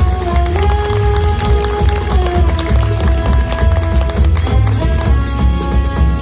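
Jazz big band playing live: long held chords that shift every second or two, over double bass and drum kit with steady cymbal and drum strokes.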